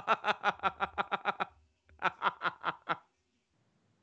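A man laughing in quick pulses, about eight a second, then pausing briefly and laughing again in a shorter run about two seconds in.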